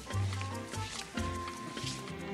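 A rumba band playing Latin dance music: a moving bass line under held notes, with short percussion clicks.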